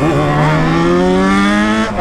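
Motorcycle engine pulling under steady acceleration, its pitch rising slowly and evenly, heard from on board the bike.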